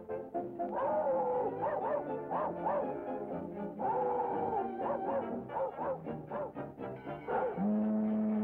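Orchestral cartoon score led by brass, playing short notes that slide up and down. Near the end a low note comes in and is held.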